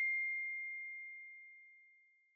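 The ringing tail of a logo-sting chime: one high, pure tone, struck just before, fading away over about a second and a half.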